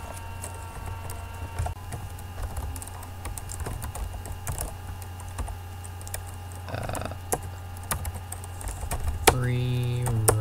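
Typing on a computer keyboard: irregular key clicks as a short terminal command is typed, over a steady low hum.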